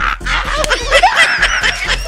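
Men laughing loudly, a run of high, bubbling cackles and chuckles.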